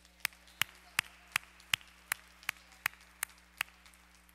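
Hands clapping in a steady beat, about three sharp claps a second, close to the microphone, stopping just before the end. Fainter clapping from others runs underneath.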